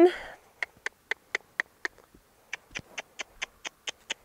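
Footsteps of a horse and its handler walking on short, dry grass: a string of short, crisp ticks about four a second, with a brief pause about two seconds in.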